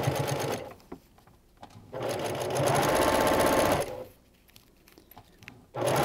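Electric domestic sewing machine stitching along a zipper in short runs: it runs briefly, stops just before a second in, runs again for about two seconds, pauses, and starts up again near the end.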